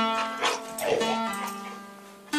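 Acoustic guitar strummed a few times, with a voice holding long, steady notes over it. The held pitch steps down about two-thirds of the way through, and the sound fades toward the end.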